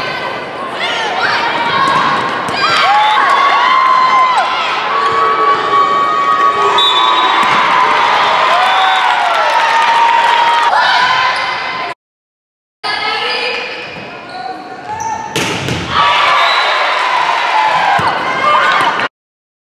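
Indoor volleyball rally in a large echoing hall: the ball is struck with sharp smacks, players' shoes squeak on the court, and players and spectators call out. The loudest hit comes about three quarters of the way through, and the sound cuts out for about a second near the middle.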